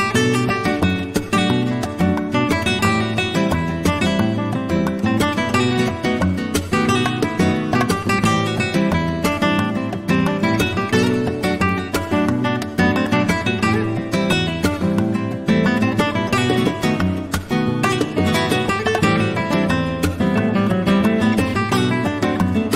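Three nylon-string Spanish guitars playing a fast flamenco piece together, a steady stream of rapid plucked notes.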